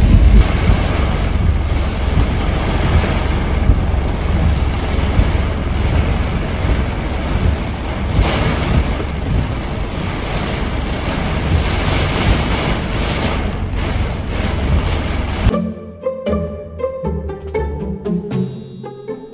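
Heavy tropical downpour drumming on a car's roof and windshield, heard from inside the cabin as a dense, steady hiss. About fifteen seconds in it cuts off suddenly and music with distinct notes takes over.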